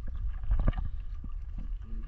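Wind on the microphone and water lapping against the hull of a small wooden outrigger boat, with a single knock about two-thirds of a second in.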